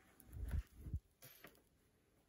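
Faint handling sounds from jersey fabric being shifted and readjusted by hand at a stopped overlocker: two soft low thumps in the first second, then a couple of light clicks.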